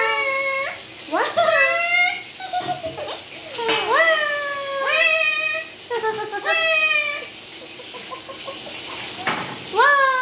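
Alexandrine parakeet calling out about five drawn-out, wow-like mimicked calls, each rising sharply and then sliding slowly down in pitch.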